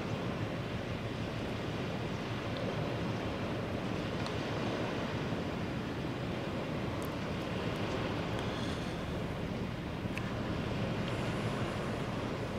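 Steady outdoor river ambience: an even rush of wind on the microphone mixed with the wash of the river's water.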